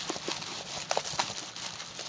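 A rolled diamond painting canvas with its clear plastic cover being handled and pressed flat by hand: light crinkling with scattered small ticks at irregular times.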